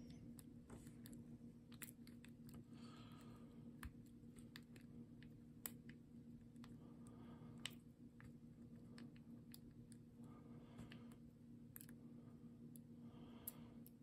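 Faint, irregular clicks of a short hook pick raking and lifting the pin tumblers of a Squire No. 35 padlock held under tension, over a low steady background hum.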